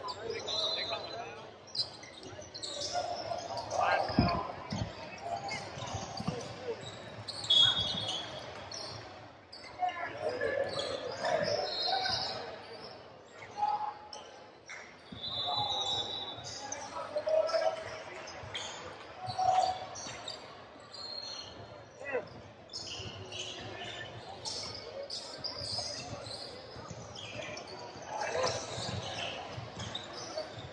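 Basketball game sounds on a hardwood gym court: the ball bouncing, with a loud thump about four seconds in, and several short high sneaker squeaks. Players and spectators call out, echoing in the large hall.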